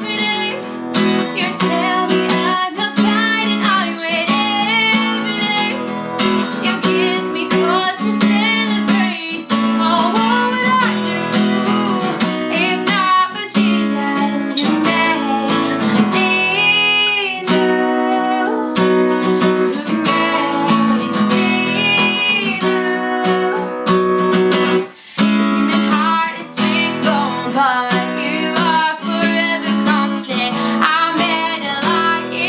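A woman singing to her own strummed acoustic guitar, with a brief break near the end.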